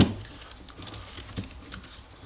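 Hands tightening the keyless chuck of a DeWalt DCD796 cordless drill with an allen key: a sharp knock right at the start, then a few light clicks and rattles of metal.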